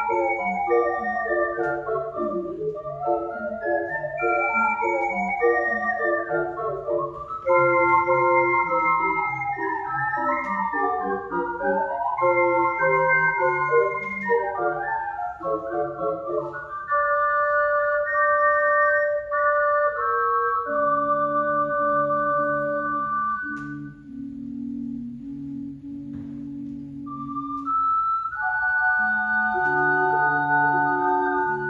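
An ocarina septet, seven ocarinas from soprano down to contrabass, playing together in harmony. For about the first sixteen seconds the parts move quickly, then they settle into long held chords; for a few seconds near the end only the low ocarinas sound, before the full ensemble comes back in.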